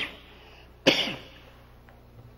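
A man coughing into his hand: the end of one cough at the start and another short cough about a second in.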